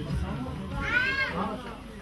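A single short high-pitched cry, rising then falling in pitch, about a second in, over faint background voices.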